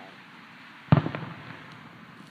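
A firework bursting about a second in: one sharp bang that dies away over about half a second, followed by a couple of smaller pops.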